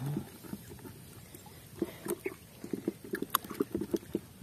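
A hand groping in mud and shallow water: irregular wet squelches and small splashes, coming thicker from about two seconds in, with a few sharp clicks.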